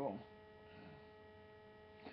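Faint, steady electrical hum made of several constant tones, held level through a pause in the talk. The tail of a spoken word fades out right at the start.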